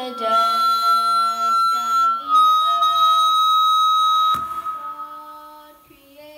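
A girl singing a hymn into a handheld microphone while a loud, steady, high whistle of PA feedback sounds over her voice. The whistle drops slightly in pitch about two seconds in and cuts off with a click after about four seconds, leaving her voice on its own.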